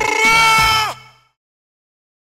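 A man's voice holding one long, wavering sung note that falls at the end and stops about a second in.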